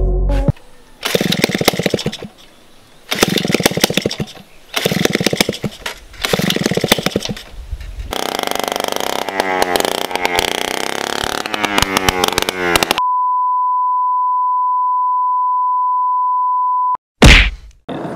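Small engine on a homemade go-kart firing in short bursts of about a second, four times, then running for several seconds with the revs rising and falling. After that, a steady high beep is held for about four seconds, and a brief loud burst comes near the end.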